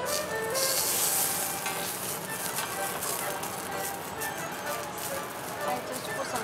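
Fish sizzling on a hot teppanyaki griddle, with a sharper hiss flaring up about half a second in and settling back after about a second.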